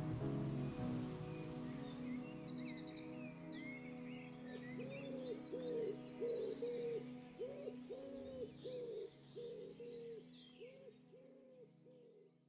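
Music outro: held drone chords with bird sounds laid over them, high chirping trills at first, then from about halfway a run of repeated hooting calls, about two a second. The whole thing fades out near the end.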